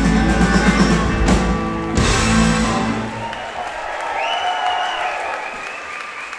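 A live rock band with electric guitars, bass and drums ends the song on a final hit about two seconds in, which rings out and dies away by about three seconds. Audience applause and cheering follow, with high whistles from the crowd.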